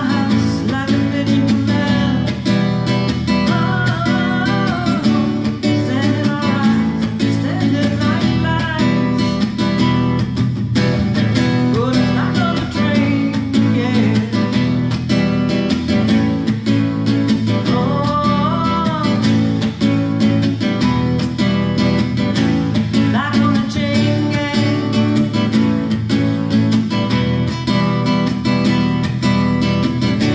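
Acoustic guitar strummed steadily in a live song, with a woman's voice singing a few long, drawn-out phrases over it.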